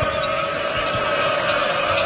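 Basketball bounced on a hardwood court, a few dribbles about half a second to a second apart, over arena crowd noise and a steady held note of music.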